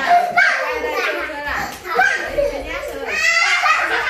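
Young children's excited voices, chattering and shouting while they play, with a loud high-pitched shout or squeal in the last second.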